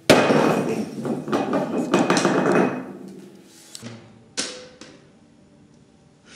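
A sudden crash and clatter of hard objects that dies away over about three seconds, followed by a few sharp clicks.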